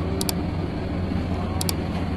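Steady low rumble of background noise, with two brief high clicks, one just after the start and one near the end.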